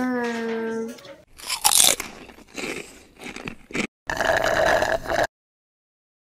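A held pitched note ends about a second in. Then comes a run of irregular crunching and chewing sounds of someone eating a meal, and about four seconds in a louder steady rushing noise that cuts off suddenly.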